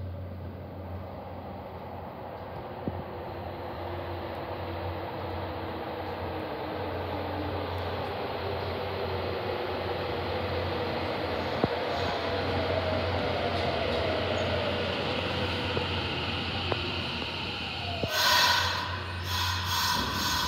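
Nagoya subway 3050 series train arriving at an underground station: a rumble that grows as it comes out of the tunnel, with its inverter motor whine falling in pitch as it slows. Near the end a louder, high-pitched screech starts as the train runs alongside the platform.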